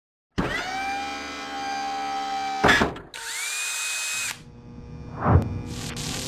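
Power-tool sound effects for an animated machined metal part: a drill-like whine spins up and holds one pitch for about two seconds. A sharp swoosh follows, then a second, hissier whine that rises and holds for about a second, and a low whoosh near the end.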